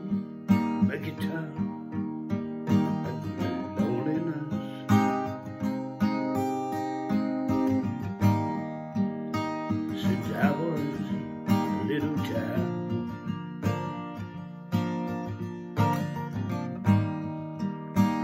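Epiphone Hummingbird steel-string acoustic guitar strummed, chords struck in a steady, recurring rhythm.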